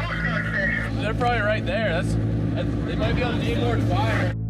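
A man's voice coming over a marine VHF radio, giving his boat's position, over the steady hum of a boat engine.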